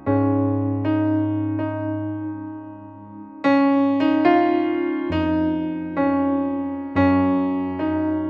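Piano playing a slow interlude in octaves over F sharp, C sharp and G sharp major chords, the right hand going back and forth between C sharp and D sharp. Notes are struck every second or so and left to ring, with new bass notes entering at each chord change.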